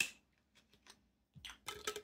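A few faint clicks and light taps from small objects being picked up and handled on a desk, the sharpest one right at the start, otherwise quiet.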